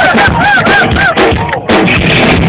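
Loud live rock band: electric guitar playing a quick repeating figure of short rising-and-falling notes, about four a second, over drums, with a brief break near the end.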